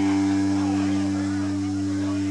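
A chord from the band's amplified instruments held and left ringing, a few steady pitches that fade slowly.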